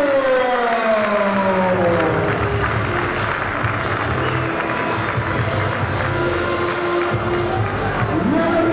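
Crowd applauding and cheering, with music playing.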